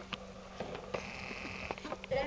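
A few faint clicks and smacks of a baby feeding himself hummus with his fingers from a small plastic bowl, over a low steady hum.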